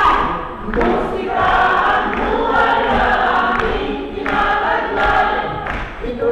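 A group of voices singing together like a choir, holding notes and moving between them, with short breaks between phrases.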